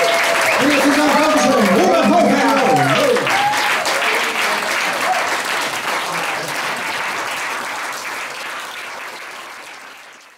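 Audience applauding, with voices calling out over the clapping in the first three seconds or so; the applause then slowly fades away.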